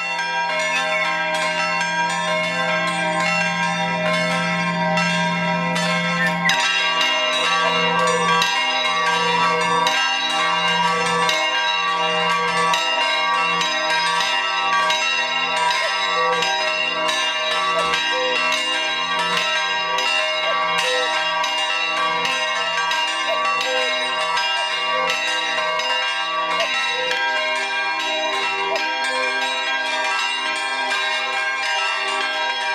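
Church bells pealing: a continuous run of strokes a few times a second, each ringing on under the next. A low hum sits under the first few seconds.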